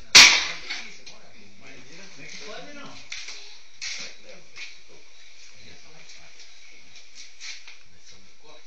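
A single sharp, loud crack just after the start, dying away within about half a second, followed by faint background noise with distant voices.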